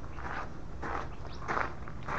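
Footsteps on gravel, three soft steps over a steady low background.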